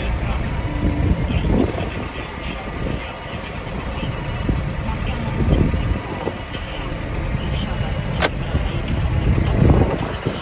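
John Deere tractor's engine running, heard from inside the cab, swelling in level a few times as the front loader works a silage bale. A single sharp click about eight seconds in.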